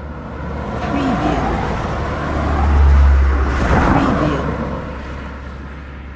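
Road traffic: a steady wash of vehicles with a deep rumble, swelling as one passes close and loudest about three seconds in, then fading.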